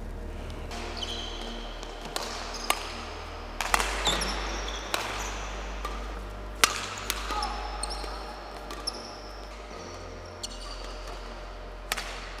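Badminton rally in a hall: sharp racket strikes on a shuttlecock, several hits spaced about half a second to a few seconds apart, with short high sneaker squeaks on the court floor between them.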